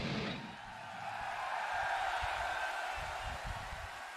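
Live heavy-metal band music stops, followed by a hazy, steady crowd cheering from the concert audience.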